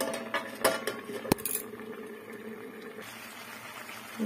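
Metal lid clinking against an aluminium kadai as it is handled: a few light clinks, then a sharper clank just over a second in that rings on for about two seconds.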